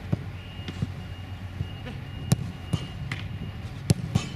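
A soccer ball being struck and caught in goalkeeper training: several sharp, irregularly spaced thuds, the loudest a little past halfway and near the end, over a steady outdoor background.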